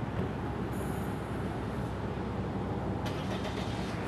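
Steady low rumble of an idling vehicle engine, with a faint rustle of paper from about one to two seconds in.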